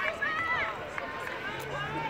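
Several voices shouting and calling at a distance across a football field as a play runs, none of them close or clear enough to make out words.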